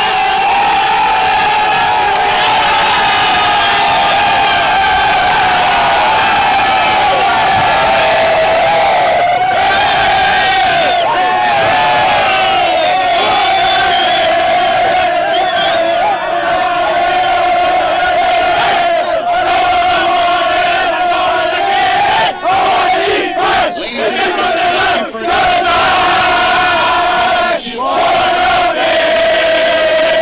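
A team of soccer players yelling and cheering together in a long, sustained group shout of victory celebration, with short breaks in the last several seconds.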